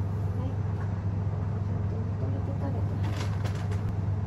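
A cat chewing treats off the floor: a few faint, crisp crunching clicks about three seconds in, over a steady low hum.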